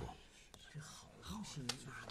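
Quiet, low speech: a few murmured words, with a couple of faint clicks.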